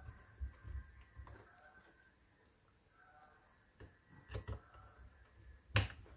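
Small Phillips screwdriver turning screws into a laptop's bottom cover: faint scraping and soft taps, a couple of sharp clicks about four seconds in and a louder click near the end.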